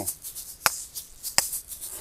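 Asalato shakers swung in a full circle: a light rattle of the seeds inside, with two sharp clicks as the two shells strike each other, about three quarters of a second apart.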